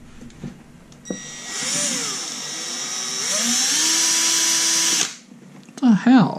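Cordless drill running for about four seconds, its pitch rising and then holding steady before it cuts off. A brief, loud sound follows right at the end.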